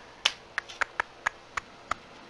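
A run of about seven small, sharp clicks, a few tenths of a second apart.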